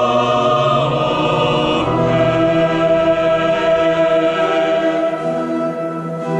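Mixed choir of women's and men's voices singing a sacred piece in held chords that change every second or two.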